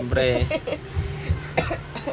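A short bit of voice and a cough, then a few soft crinkles and clicks as a small folded paper raffle slip is opened by hand.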